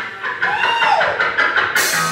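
Live band music led by electric guitar. Notes are bent up and then back down in pitch, over drums, with a cymbal crash near the end.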